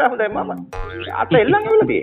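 Voices over music, with a sudden cartoon sound effect a little under a second in.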